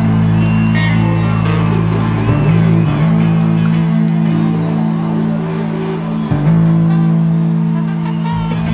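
Live rock band playing, with bass and electric guitar holding long, steady low chords that change twice.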